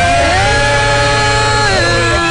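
Gospel worship singing: male voices hold one long chord together, moving to a new chord near the end.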